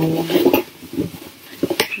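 Hands opening and handling a cardboard box, with a few light clicks and knocks.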